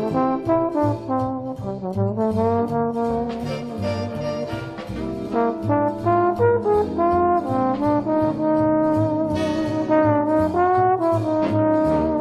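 Big-band jazz with a lead trombone playing the melody in held notes over a brass section, a plucked string bass stepping underneath and cymbals ticking.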